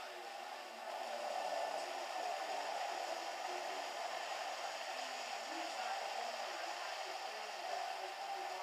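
A steady rushing noise, like an air blower running, that gets louder about a second in and then holds.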